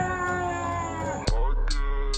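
A long, drawn-out wail that dips in pitch, then just over a second in electronic theme music cuts in suddenly with a deep bass and sharp beat hits.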